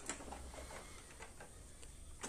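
Faint plastic clicks as the front cover of a Kyocera copier is unlatched and swung open.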